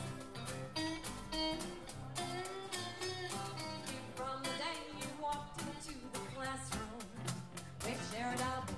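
Live country band music: guitar with a washboard played in a steady rhythm, and a melody line over it.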